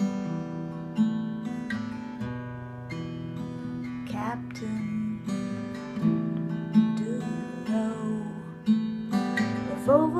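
Acoustic guitar strumming chords in an instrumental passage of a song demo.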